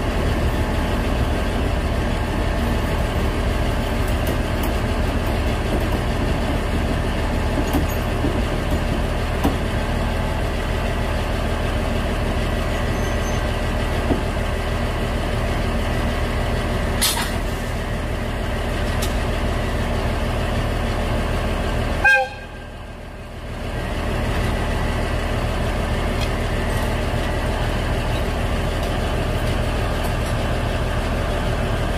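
Steady mechanical hum of locomotives running at a station as an ED90 rack electric locomotive creeps up to couple onto the train. About 22 seconds in there is a short sharp sound, then the level briefly drops before the hum returns.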